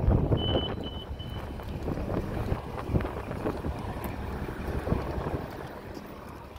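City street noise: vehicle engines rumbling and wind buffeting the microphone, slowly fading, with three short high-pitched beeps about half a second in.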